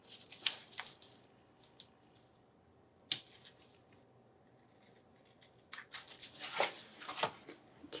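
Tape being pulled off and torn at a dispenser, with paper handling: a few small clicks and rustles, one sharp click about three seconds in, and a busier run of scratchy sounds near the end.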